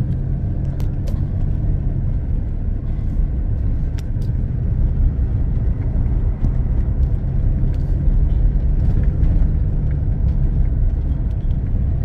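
Steady low rumble of a car driving slowly along a block-paved street, heard from inside the cabin.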